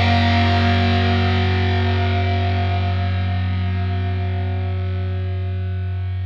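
Music: a held, distorted electric guitar chord with effects, ringing out and slowly fading as the song ends.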